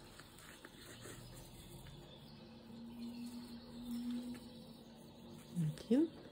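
Faint scratchy rustling and small clicks of a crochet hook being worked through stiff jute twine. A steady low hum runs for about two seconds in the middle.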